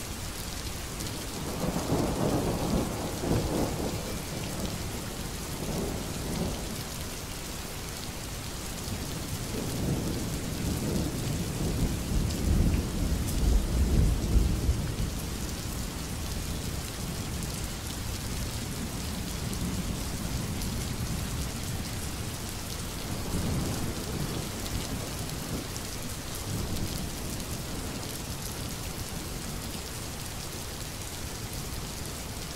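Steady rain falling, with rolling thunder over it: a rumble in the first few seconds, a longer and louder one about halfway through, and a softer one near the end.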